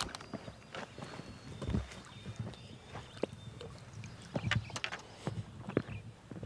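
Faint scattered knocks and clicks as fishing rods and terminal tackle are handled and rigged, with one duller thump a little under two seconds in.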